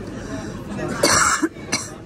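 A person coughing twice: a longer, loud cough about a second in, then a short one just after, over a low murmur of voices.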